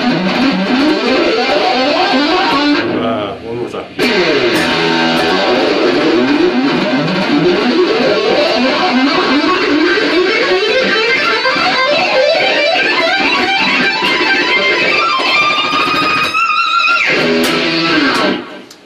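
Electric guitar played through a phase shifter at speed: fast legato runs of six-note groups climbing the E minor scale, mostly hammer-ons and pull-offs rather than picked notes. The sound briefly dips out about three seconds in, and near the end a few notes are held and bent.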